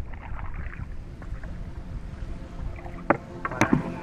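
Paddle strokes in the water from a small wooden canoe, with a few sharp knocks near the end.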